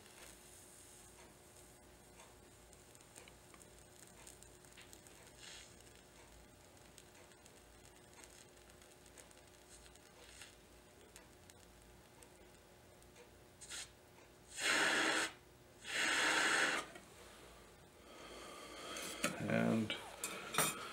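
Soldering with a jeweler's mouth blowpipe over an alcohol lamp: a faint steady hiss at first, then two loud rushes of breath about a second each, close together about fifteen seconds in. Rustling handling noise follows near the end.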